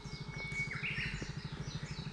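Wild birds singing in roadside woodland: repeated short falling chirps, and one long steady whistle that ends in a rising note in the first second. Under them runs the steady low pulse of an idling motorcycle engine.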